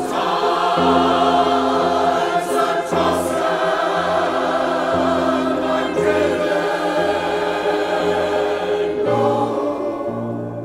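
Church choir singing in full harmony, holding sustained chords, loud and steady throughout.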